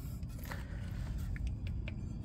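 Faint handling noise over a steady low rumble: a few small clicks and a light scrape as a mower blade is moved by hand on its spindle.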